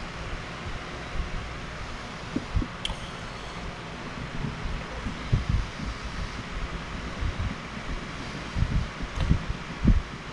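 Electric pedestal fan running steadily, with a few low knocks and one sharp click from handling tools at the bench.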